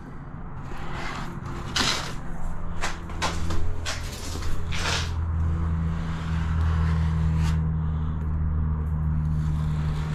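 A plastic spatula scrapes and smears waterproofing compound over a wall around tap fittings, with a few short scraping strokes in the first half. A steady low engine drone builds under it and carries on through the second half.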